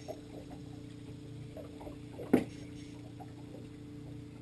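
Steady low hum of a boat motor under way while trolling, with faint scattered ticks and one sharp knock a little past halfway.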